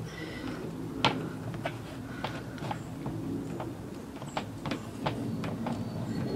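A pointed self-tapping screw being turned by hand with a screwdriver into the plastic of a Green Cone digester's lid, biting into a plastic backing piece on the inside. Scattered sharp clicks at irregular intervals, the loudest about a second in.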